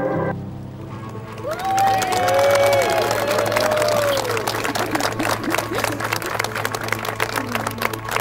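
Wedding guests clapping and whooping for the couple's first kiss, starting about a second and a half in, over a background music track with a sustained low note.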